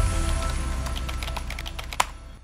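Logo intro sting: a low bass hit that rings on as a drone under a quick run of keyboard-like typing clicks, fading out at the end.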